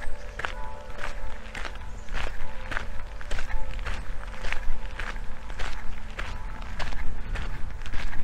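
Footsteps crunching on a fine gravel path at a steady walking pace, about two steps a second.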